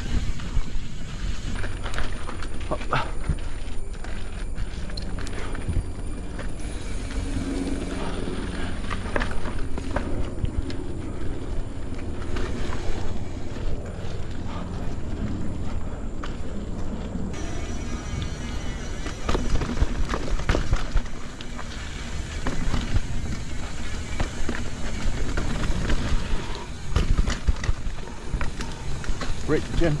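Mountain bike on knobby Michelin Wild Enduro tyres rolling over a rough, janky dirt trail: a steady rumble of tyre and trail noise with frequent knocks and rattles from the bike over bumps.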